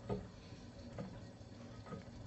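Faint trickle of hot water from an Über boiler's spout into a cupping bowl of ground coffee, topping it up to about 180 grams. There are two faint clicks, one at the start and one about a second in.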